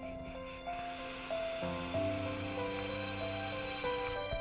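Background music of slow held notes. Under it, from about a second in, a faint high hiss of air drawn through a vape tank while the coil fires.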